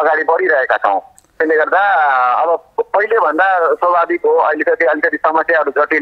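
A person talking continuously over a telephone line, the voice thin and narrow.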